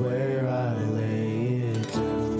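Two men singing a slow worship song at microphones over acoustic guitar, in long held notes, with a brief break for breath near the end.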